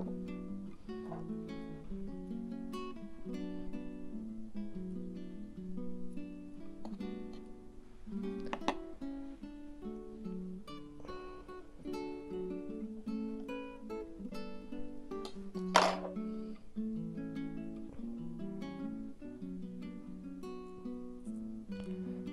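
Background music: a plucked acoustic guitar playing a melody of picked notes. A couple of short sharp knocks are heard, the loudest about sixteen seconds in.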